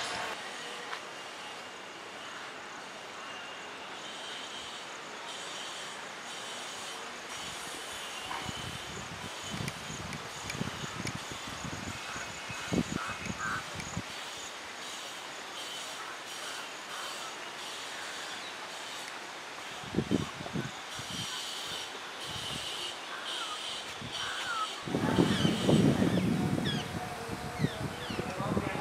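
Outdoor ambience: a steady hiss with a few faint bird chirps and bursts of low rumble from wind on the microphone, strongest a few seconds before the end.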